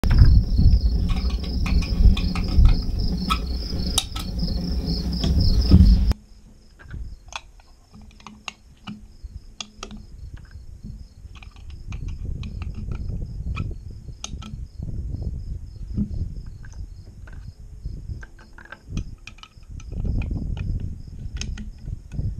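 Crickets chirping in a steady, even high pulse, over wind buffeting the microphone. The wind is loud for about the first six seconds, then drops away suddenly, leaving softer gusts and a few small clicks.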